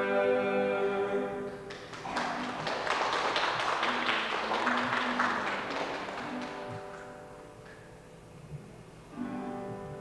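Acoustic guitars and voices end a song on a held chord, then applause for about five seconds that fades away; guitar notes return near the end.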